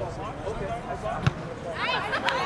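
A single sharp thump of a soccer ball being kicked about a second in, over spectators talking and calling out; the voices rise into excited shouting near the end.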